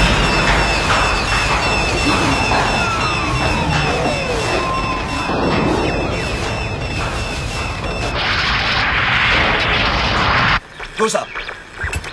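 Cockpit warning alarm beeping rapidly, about four times a second, over a heavy rumble of the craft being shaken, with a falling whine partway through. About eight seconds in, a loud rush of hiss takes over and cuts off suddenly, and a voice follows near the end.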